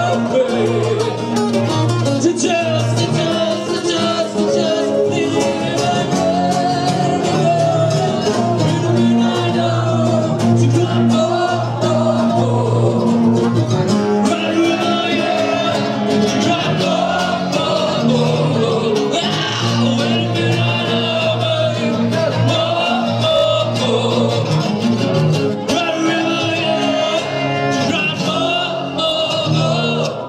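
A live song: a man singing into a microphone over a strummed acoustic guitar and an electric guitar, playing without a break.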